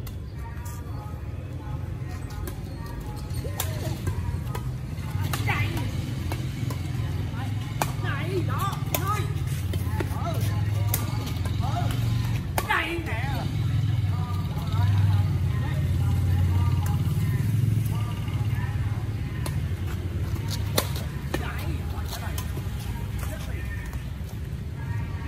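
Badminton rackets striking a shuttlecock in a rally, sharp clicks a second or more apart, with players' short shouts, over a steady low rumble.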